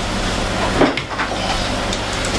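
A kitchen cupboard under the counter being opened and a mesh strainer taken out: one knock a little under a second in, then a few lighter clicks, over a steady hum.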